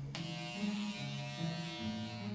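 Electric hair clippers buzzing steadily as they cut hair, starting just after the beginning, over a low, slowly stepping bass line of background music.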